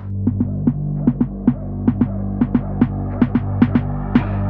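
Electronic music: a steady low drone under a quick, even beat of sharp clicks.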